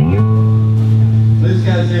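Amplified electric guitars and bass strike one chord at the start and let it ring out as a steady, held low drone. A voice starts talking over it near the end.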